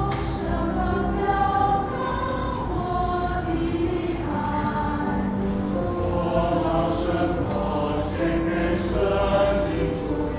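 Mixed choir of men's and women's voices singing a hymn in held, slowly moving notes.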